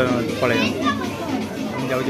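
Several people talking in a crowded clothing store, with overlapping voices, some of them high-pitched.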